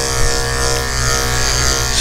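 Andis electric pet clipper running with a steady buzz as it is worked through a puppy's curly coat.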